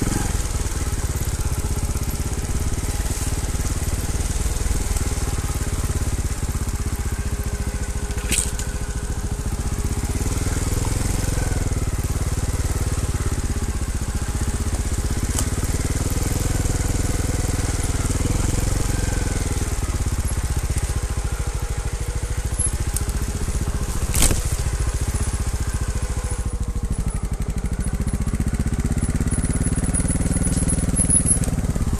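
Trials motorcycle engine running at low revs, its pitch rising and falling slowly with the throttle, with the crunch of tyres over leaf litter and twigs. Two sharp knocks cut through, about a third of the way in and again later.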